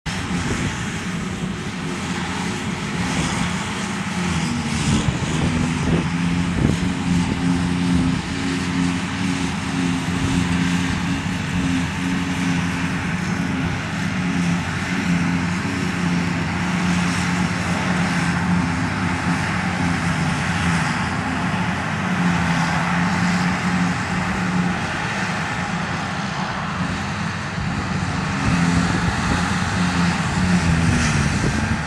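Claas Jaguar 820 forage harvester at work, its engine running under load with a steady drone while chopped grass rushes out through the spout into the trailer. The engine of the tractor pulling the trailer alongside runs with it.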